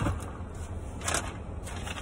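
A brief crinkling rustle of paper food packaging being handled, about a second in, over the steady low hum of a car cabin.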